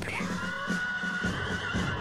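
A horse whinnying: one long call that falls in pitch at the start and then holds before fading near the end, over faint background music.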